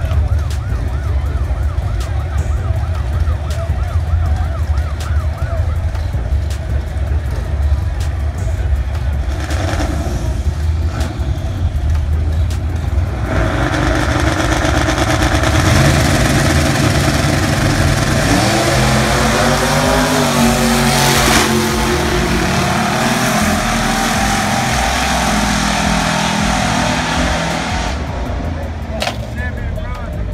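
Big-rim 'donk' drag cars at the start line, engines rumbling loudly, with a warbling siren-like tone over them for the first few seconds. About 13 seconds in the cars launch: the engine noise swells and rises in pitch for several seconds as they accelerate down the strip, then fades near the end.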